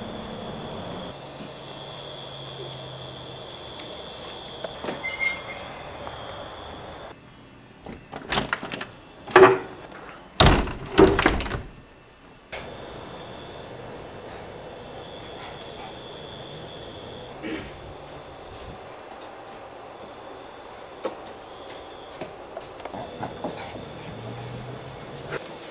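Camcorder hiss with a faint high steady whine, broken about eight seconds in by a run of loud, sudden knocks and thumps lasting about four seconds. A short laugh comes at the very end.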